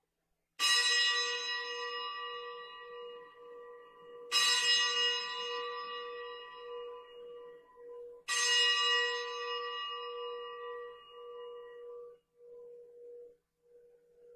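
A bell struck three times, about four seconds apart. Each stroke rings out and slowly fades, and a lower hum wavers on as the last one dies away. This is the bell rung at the elevation of the consecrated host, just after the words of consecration.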